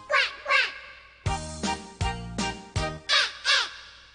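Two pairs of goose-like honks, each call falling in pitch: one pair right at the start and another about three seconds in. They sound over a bouncy children's-song backing with a steady beat.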